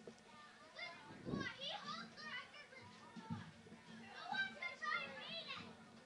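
Faint, distant voices of players and spectators calling out across an outdoor soccer field, many overlapping shouts and calls, with a couple of soft low thumps.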